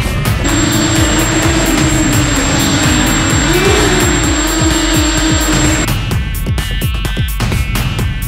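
Background music with a steady beat, and over it an FPV racing quadcopter's motors and propellers buzzing for about five seconds. The pitch rises briefly in the middle and the buzz cuts off sharply.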